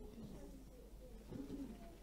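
Quiet room tone in a pause, with a brief, faint low murmur about a second and a half in.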